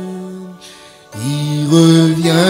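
Slow hymn singing in long held notes: one note fades out about half a second in, a brief pause follows, then the singing resumes with a note sliding up and stepping higher.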